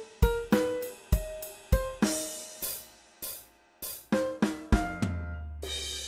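Playback of a short song played by software (VST) instruments: piano notes over a drum-kit pattern with snare, bass drum and cymbals. It ends on a held low note with a cymbal ringing out from about five seconds in.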